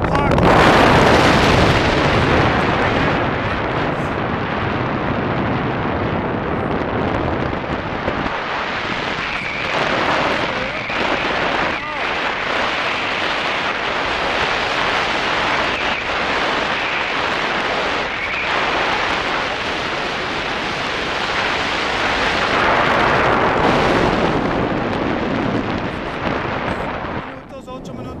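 Loud wind buffeting the camera microphone as a tandem paraglider flies fast, banked manoeuvres. The rush starts suddenly and eases off near the end.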